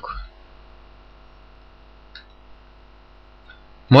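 Steady electrical mains hum on the recording, with one faint click about two seconds in.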